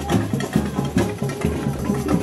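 Live samba bateria drumming: surdo bass drums beating about twice a second under dense, fast percussion strokes.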